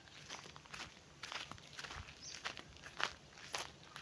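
Footsteps of a person walking over leafy farm ground, a series of soft, irregular short crunches.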